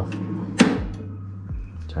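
A single sharp click about half a second in: the power switch of an Anatol flash dryer being turned off, with a low steady hum underneath.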